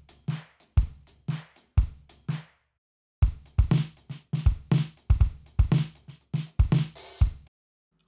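Logic Pro's Liverpool acoustic drum kit playing preset step-sequenced funk grooves: kick, snare and hi-hats. The first beat stops about two and a half seconds in, then after a short gap a busier groove starts and cuts off shortly before the end.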